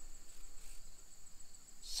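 Insects chirring steadily at a high pitch in the background, a thin continuous buzz with no break.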